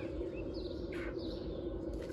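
A few faint bird chirps over a steady low background rumble, with a short hissing sound about a second in.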